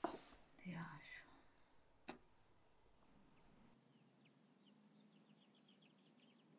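Near silence: faint room tone with a click at the start, a soft breathy murmur and another click about two seconds in. After a cut about four seconds in, faint outdoor birdsong of short, quick falling chirps and brief steady whistles.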